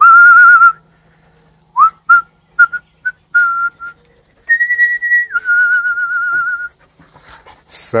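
A person whistling to call dogs. It starts with a long warbling note, then a run of short rising chirps, then a higher held note that drops and warbles before stopping near the end.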